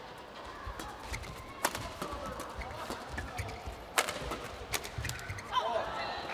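Badminton rally: sharp hits of racket on shuttlecock, the loudest about one and a half seconds and four seconds in, among lighter hits and the dull thuds of players' feet on the court.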